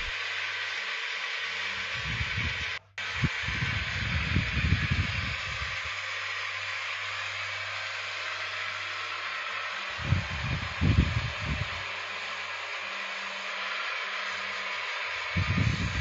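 Belt-driven wood lathe running with a steady hum and hiss while a hand chisel turns a wooden geta bera drum shell, with louder rumbling bursts where the cut bites, a few seconds in, around ten seconds in and near the end. A brief dropout about three seconds in.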